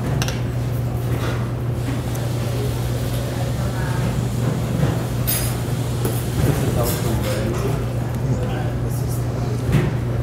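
Steady low hum of a teaching kitchen, with faint background voices and a few light knocks of dishes on the counter.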